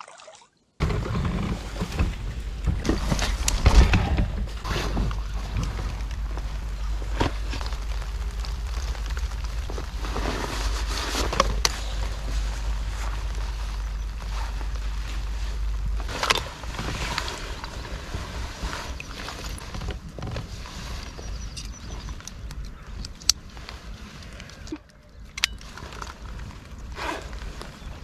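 Wind rumbling on the microphone and shallow river water sloshing as a man wades beside a belly boat, with rustling of clothing and knocks from handling gear. The wind rumble eases about halfway through.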